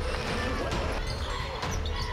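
Basketball dribbled on a hardwood arena court, with short sneaker squeaks, over background music and voices.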